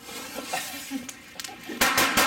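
A firecracker's fuse hissing for a second or so, then a loud, sharp bang near the end as it goes off at ground level.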